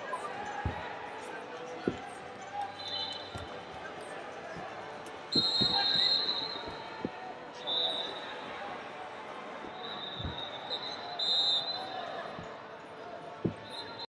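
Busy wrestling-arena sound: high referee whistle blasts several times, the longest a little past the middle, and scattered dull thumps, over a murmur of voices.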